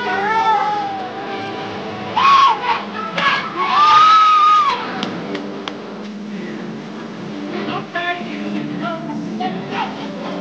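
Juke dance music playing in a crowded room, with the crowd's voices shouting over it. The loudest parts are drawn-out shouts about two and about four seconds in.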